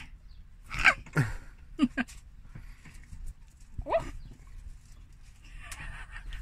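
A woman's short bursts of laughter and squeals, several times, one gliding steeply down in pitch about a second in and one gliding up near four seconds, with sharp breaths between.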